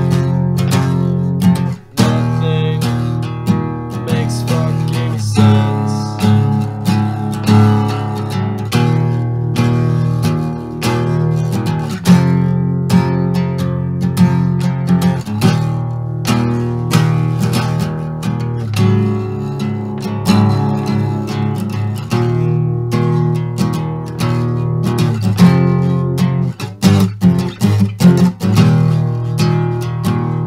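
Acoustic guitar strummed in chords, one instrument alone without vocals. Brief break about two seconds in; choppier, stop-start strums near the end.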